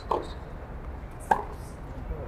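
Tennis ball being hit during a rally: two sharp pocks, one just after the start and one a little over a second later, over a low steady background.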